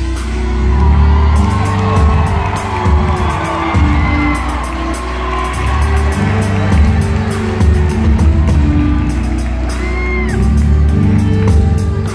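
Live band music: a violin playing the melody over keyboard, a deep bass line and a drum kit keeping a steady beat with cymbals.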